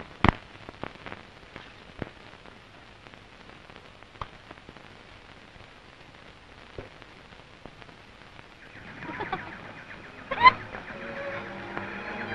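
Faint hiss and crackle of an old optical film soundtrack, with scattered clicks. About nine seconds in, music fades in and grows louder.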